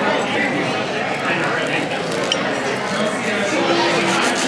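A table knife sawing through the crunchy cinnamon-sugar crust of Tonga Toast, a thick stuffed French toast, with a steady crackling scrape and a light click of cutlery, over restaurant chatter.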